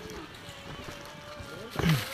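Murmur of a crowd of hikers with faint distant voices and footsteps on a rocky trail, and one short loud voice sound about 1.8 seconds in.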